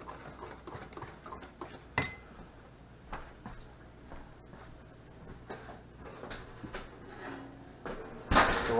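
A wire whisk ticking and scraping against a stainless steel mixing bowl of batter, ending about two seconds in with a sharp metallic clink that rings briefly. After that come a few faint scattered knocks over a steady low hum.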